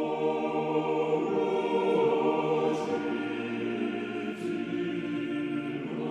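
Background choral music: voices holding long, sustained notes in slowly shifting chords.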